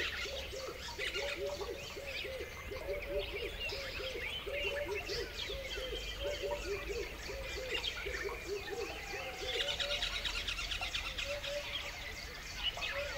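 Birdsong: many high chirps and trills, with a low call near 500 Hz repeated two or three times a second that thins out near the end.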